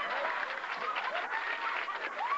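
Live audience applauding, with voices calling out over the clapping.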